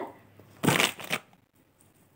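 A short rustle of a red multi-strand beaded choker necklace being picked up and handled, lasting about half a second.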